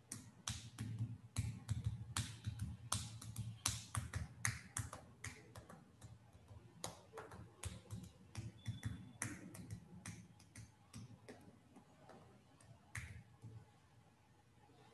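Irregular sharp clicks and light taps close to the microphone, several a second, over a low rumble of handling noise, like small objects or keys being worked on a desk.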